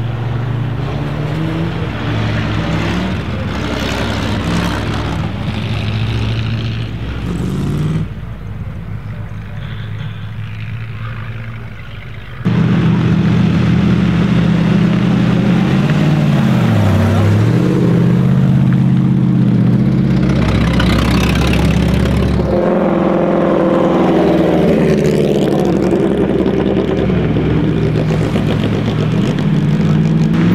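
Several vintage cars' engines running as they drive past, the engine note dipping and rising again with the revs about halfway through; the sound grows markedly louder and closer a third of the way in.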